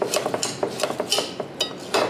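A utensil stirring soaked rice, water and oils inside a large glass vase, clinking against the glass in quick, irregular knocks.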